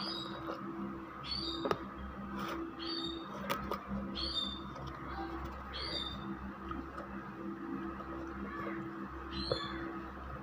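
A bird chirping over and over, a short call falling in pitch about every second and a half, with a longer pause before the last one. A steady low hum and a few light clicks sit behind it.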